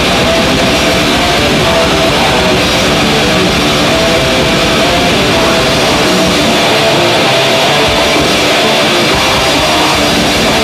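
Death metal band playing live at a loud, unbroken level: distorted electric guitar over a full drum kit.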